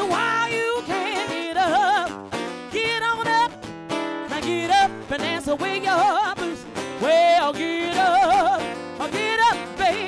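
Live blues band: a woman singing long notes with vibrato at the microphone over acoustic guitar.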